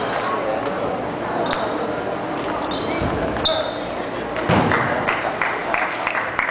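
Table tennis balls clicking off paddles and tables across a busy hall, over a hubbub of voices, with a louder burst about four and a half seconds in.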